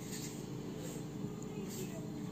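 Faint handling sounds of hands working red crochet thread and a pair of scissors, over a steady low background hum.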